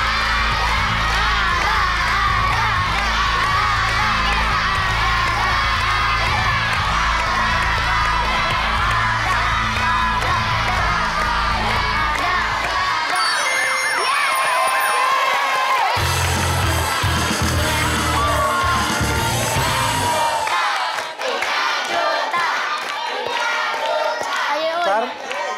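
Studio crowd cheering and shouting over upbeat game-show music. The music drops out for a few seconds about halfway and comes back, and the cheering dies down about three seconds before the end.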